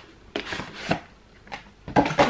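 A cardboard tripod box being handled and opened: a handful of short taps and knocks, the loudest near the end.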